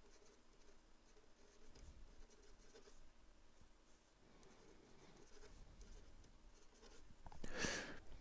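Faint scratching of a marker pen writing and drawing on paper, in short strokes with pauses. A brief louder rustle comes near the end.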